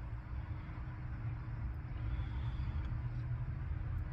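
Distant road traffic, a steady low rumble that grows a little louder about halfway through.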